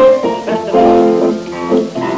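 Live band accompaniment playing a short instrumental passage between sung verses, heard on an old mono off-air tape recording.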